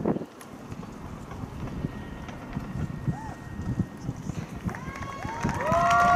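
Open-air ambience: wind on the microphone over faint, scattered crowd noise. Near the end a few steady held tones rise in and hold.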